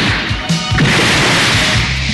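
Cartoon battle soundtrack: dramatic music under a loud crashing sound effect, with a fresh crash about half a second in.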